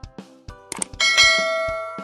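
Subscribe-button animation sound effects over background music with a steady beat: a quick click, then about a second in a bright notification-bell ding that rings out and slowly fades.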